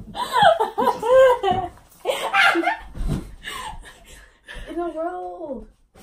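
Girls laughing and shrieking with high-pitched voices, and one longer drawn-out cry about five seconds in.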